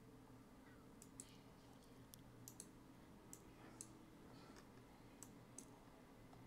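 Faint, irregular clicks of a computer mouse, about ten scattered over a few seconds, over near-silent room tone.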